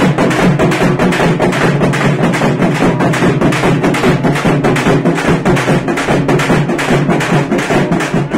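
Large barrel drums beaten loudly in a fast, steady rhythm of several strokes a second.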